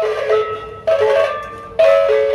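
Sasak gendang beleq gamelan ensemble playing a gending: three crashes of the hand cymbals about a second apart over a sustained pitched melody, while the big drums and gong drop out.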